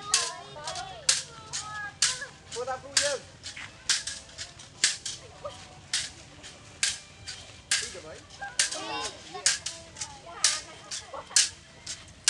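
A quick run of sharp claps, about two or three a second, keeping time for a children's dance, with children's voices calling out between them.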